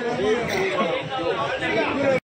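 Several men talking at once: a steady babble of overlapping crowd chatter with no single clear voice.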